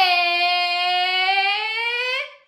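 A woman's voice holding one long sung note, dipping slightly in pitch and then rising toward the end.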